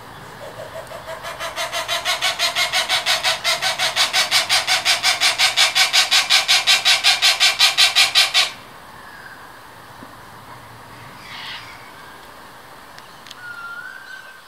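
Channel-billed cuckoo giving a rapid series of calls, about five or six a second, that grows louder over several seconds and then stops abruptly. A couple of faint bird calls follow near the end.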